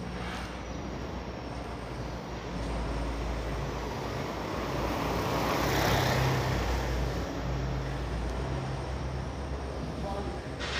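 Street ambience with a passing motor vehicle, its noise swelling to its loudest about six seconds in and then fading.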